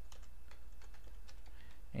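Computer keyboard being typed on: a scattered run of key clicks over a low steady hum.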